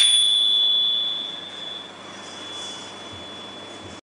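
Ching, Thai finger cymbals, struck once, ringing as one high clear tone that is loudest for about a second and fades away over about two seconds.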